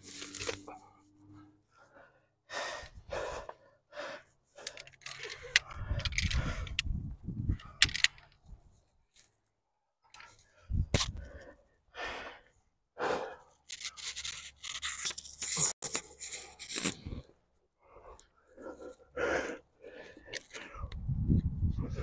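A rock climber's hard breathing under strain on a strenuous overhanging route: sharp gasps and forceful exhalations in short, irregular bursts with pauses between, and a couple of low rumbles.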